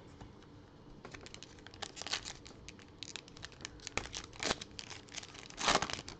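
Plastic wrapper of a trading-card pack crinkling and tearing as it is opened by hand, a run of quick crackles with louder bursts about four and a half seconds in and near the end.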